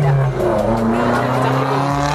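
Road traffic passing close by: a motor vehicle's engine runs past with a continuous low hum whose pitch rises slightly.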